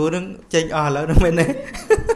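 A man talking while chuckling, his voice breaking into laughter between words.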